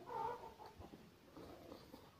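A cat gives one short meow about a quarter second in, followed by faint, soft chewing and mouth clicks.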